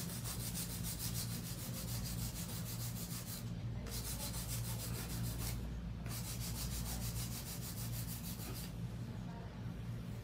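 Hand file rasping back and forth over an acrylic nail in rapid, even strokes, stopping briefly three times, as the acrylic surface is levelled by hand.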